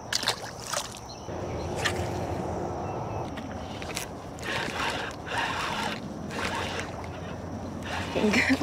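A hooked bass being reeled in on a bent rod: a steady low whirring from the retrieve begins about a second in, with a few sharp clicks and some splashy noise around the middle.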